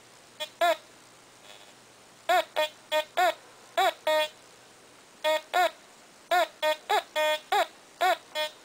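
Teknetics T2 metal detector sounding its coin tone: about fifteen short, identical high beeps, in pairs and quick runs, as the coil is swept back and forth over a coin lying right beside an iron nail. The detector is picking out the coin despite the nail close by. There is a pause of about a second with no beeps, a little after the start.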